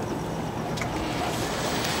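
Steady low noise of wind on the microphone and a slowly driving open shuttle cart, with no distinct engine note.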